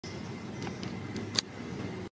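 Steady low rumble with a few light clicks, the loudest a sharp click about one and a half seconds in.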